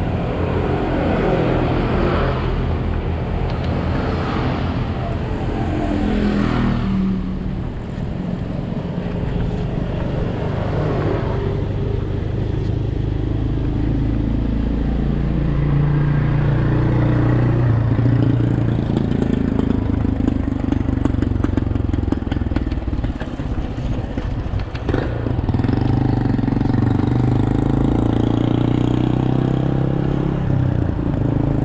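Motorcycle engines passing, their pitch rising and falling several times, over a steady low rumble of wind and tyres from a bicycle ridden on a concrete road.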